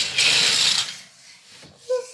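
A rattle of small plastic building-toy pieces handled on a table, lasting a little under a second.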